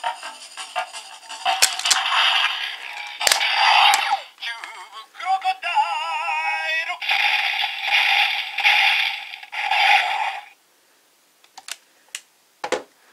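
Electronic sound effects, a recorded voice call and music played through a Zyuohger light-up toy's small, tinny speaker, with a warbling tone in the middle. It cuts off suddenly about ten and a half seconds in, followed by a few light clicks.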